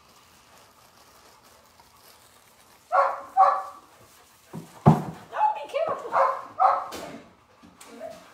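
A puppy yipping in short bursts: two close together about three seconds in, then a quicker run of several more near the end.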